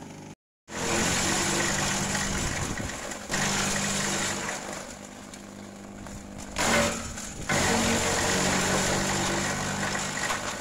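Electric shredder's motor running steadily while its blades chop gliricidia leaves and stems fed into the chute. The chopping swells and eases as branches are pushed in, with a short loud burst near the middle. The sound cuts out completely for an instant about half a second in.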